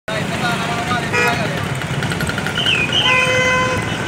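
Vehicle horn tooting: a short toot about a second in, then a longer steady one near the end, over traffic noise and voices.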